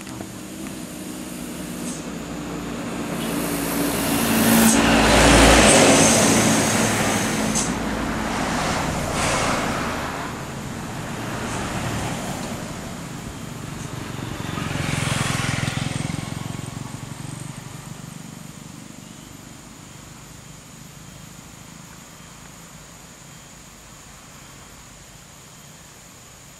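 A large coach's diesel engine works at low speed as the bus manoeuvres forward and back around a tight hairpin bend. Loud bursts of hissing come about four to seven seconds in and again around fifteen seconds. The sound then fades steadily as the bus pulls away.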